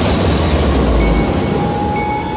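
A loud rushing whoosh with a deep rumble, fading out a little over a second in, while a thin tone begins to rise slowly in pitch: a swoosh transition effect laid over the music of the edited clip.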